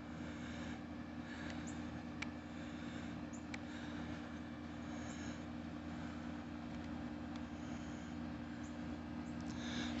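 Quiet outdoor ambience with a steady low mechanical hum and a couple of faint ticks.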